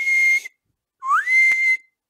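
A man whistling through his lips: two notes, each sliding up and then holding steady for about half a second, one just at the start and one about a second in, with breathy hiss. It is picked up close on a headset microphone.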